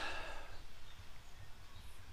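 A pause in speech: faint, steady background noise with a low rumble and hiss, and no distinct event.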